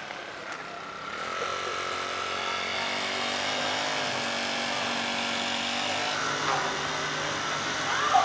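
Steady outdoor background noise, an even rushing hiss like wind or distant traffic, with faint steady tones beneath it. It starts suddenly and swells slightly in the first second.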